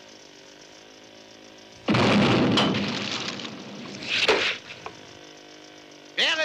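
Cartoon explosion sound effect: a sudden loud blast about two seconds in that dies away slowly, then a second, shorter crash near four seconds in.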